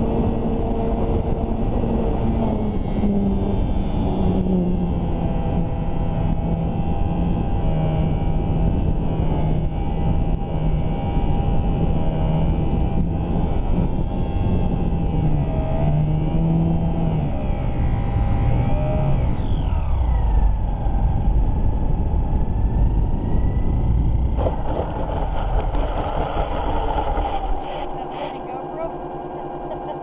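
Electric motor and propeller of a HobbyZone Super Cub S RC plane, heard from a camera on its nose, with wind rushing over the microphone. The whine wavers in pitch with the throttle and drops lower a little past halfway. Near the end comes a stretch of rattling and scraping as the plane comes down on grass, and the sound falls off.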